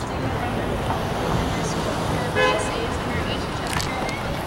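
Street ambience: a steady rush of traffic and wind buffeting the microphone, with a brief pitched sound about two and a half seconds in.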